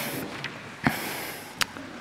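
A sheet of paper handled at a lectern: a short soft rustle about a second in, with a light click just before it and another near the end.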